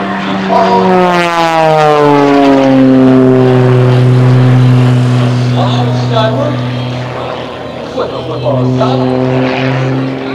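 Extra 300 aerobatic plane's six-cylinder engine and propeller running at power. About a second in the pitch falls steadily for two seconds, then holds. Near the end the level dips briefly, and the pitch comes back slightly higher.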